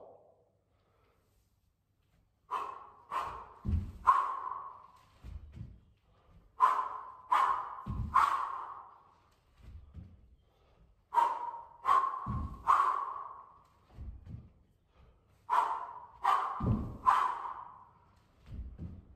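A man working through kettlebell swing-into-Cossack-squat reps: short, sharp breaths come in clusters of three, each cluster with a low thud. The pattern repeats about every four and a half seconds, once per rep, four times.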